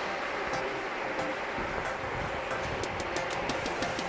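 Steady background hum and hiss of a big warehouse store's indoor space, with a run of light sharp ticks through the second half.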